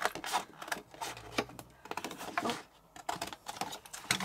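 Scissors snipping paper, an irregular run of short, sharp clicks.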